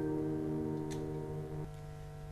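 The last held chord of a chamber piece for piano, cello and woodwind, sustained and fading away, ending about three-quarters of the way in. A faint click sounds near the middle.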